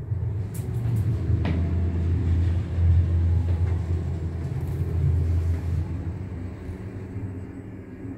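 A Schindler 3300 machine-room-less traction lift travelling, heard from inside the car: a steady low rumble that eases off over the last couple of seconds as the car slows to a stop. A single click comes about one and a half seconds in.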